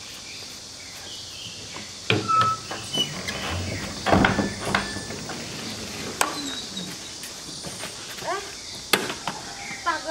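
An old wooden double door being swung shut and handled: a run of knocks and clatter about two seconds in and loudest around four seconds, then sharp single clicks near six and nine seconds.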